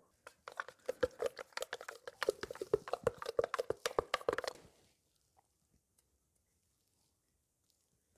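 Fluid Film rust inhibitor being dabbed and smeared onto the steel splined shaft of a hydraulic drive motor: a quick run of wet, sticky clicks and crackles that stops about four and a half seconds in.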